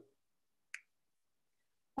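Near silence broken by a single short, sharp click about three-quarters of a second in.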